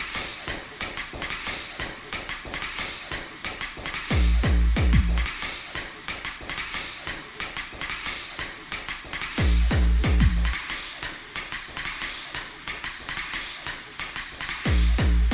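Hard techno track at 182 bpm in a stripped-back passage: fast clicking percussion runs throughout while the heavy kick drum drops out, coming back only in two short bursts of kicks, about four seconds in and again about nine and a half seconds in.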